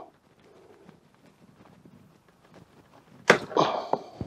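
Faint handling of a plastic fermenting-bucket lid, then about three seconds in a sudden short rush of air as the airlock is pulled out of the lid, letting air into the sealed bucket so the beer can flow out.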